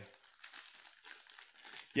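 Foil wrapper of a Select basketball hanger pack crinkling as it is handled, a run of faint, irregular crackles.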